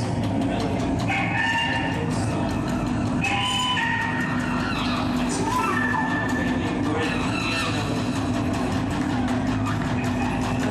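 Live band playing a droning psychedelic passage, with a low held note under sustained high tones that shift every second or so.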